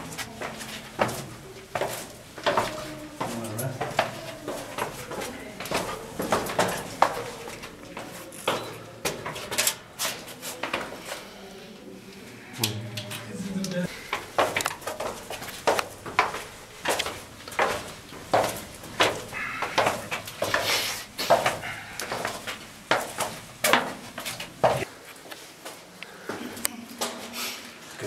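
Footsteps of people walking in single file through a narrow rock-cut tunnel and up stone steps. The shoes make sharp scuffs and taps on the stone, about one or two a second, in a small enclosed space.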